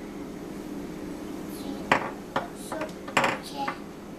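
Utensil knocking and clicking against a plastic food processor bowl while homemade peanut butter is scraped out: a handful of short sharp knocks from about two seconds in, the loudest around three seconds. A steady low hum runs underneath.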